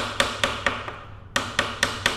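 Hammer tapping a wooden dowel held against the notched spring-preload collar of a Sur Ron X's Fastace rear shock, a quick run of sharp wooden taps about four or five a second with a short break about a second in. Each tap turns the collar a little way round to set the spring preload.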